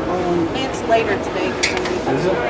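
Indistinct talk among spectators, with a few brief sharp ticks near the end.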